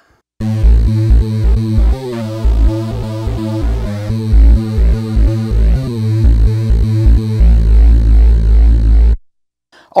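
Roland Juno-106 synthesizer in unison (monophonic) mode playing a deep, loud bass line of short repeated notes. It ends on a held note that stops about nine seconds in.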